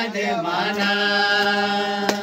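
Men singing a Christian devotional song together in one voice line, gliding down into a long held note about half a second in.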